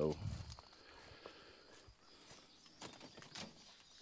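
Faint rustling and a few soft clicks and knocks from a person moving about in grass, heard after the last words fade.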